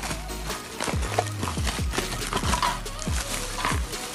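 Background music with a steady beat of deep bass drum hits that drop in pitch, over held bass notes.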